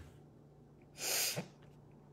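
A woman's single short, sharp breath through the nose or mouth, about a second in and lasting under half a second, with a faint steady room hum underneath.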